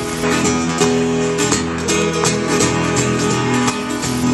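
Acoustic guitar strummed in a steady rock-and-roll rhythm, about four strokes a second, with no singing: an instrumental break in the song.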